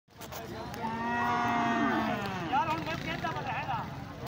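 Zebu cattle mooing: one long moo of about a second and a half that drops in pitch as it ends, followed by people's voices in the crowd.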